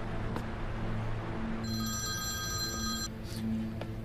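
A telephone rings once with a steady electronic ring lasting about a second and a half, a little under two seconds in, over a low, steady background music drone.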